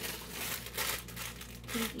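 Plastic packaging crinkling as it is handled: a bag of shiny plastic Easter grass being picked up and shown, with a dense run of crackles.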